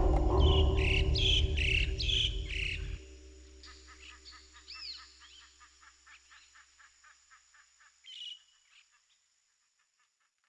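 Music that stops abruptly about three seconds in, with bird calls chirping through it and on after it, fading out, with one louder call near the end.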